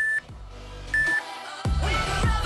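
Two short, identical electronic countdown-timer beeps a second apart, over quiet background music. About three-quarters of the way through, a louder music track with a heavy beat starts.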